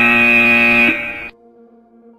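Electronic interval-timer buzzer sounding one long, steady tone that cuts off just over a second in. It marks the end of a work interval and the start of the rest period.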